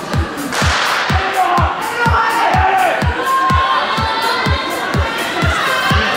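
A starting pistol cracks sharply about half a second in to start an indoor 400 m race, followed by shouting and cheering from the crowd. Background music with a steady beat, a little over two beats a second, runs under it all.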